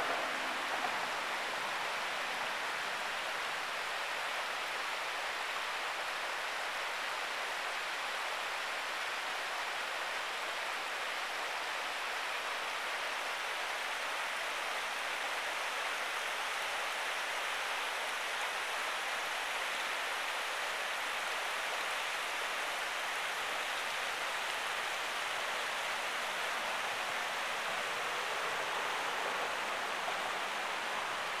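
River water flowing over shallow rocky shoals and riffles: a steady, even rush of water.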